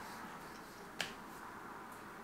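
A single sharp click about a second in, over faint steady room noise.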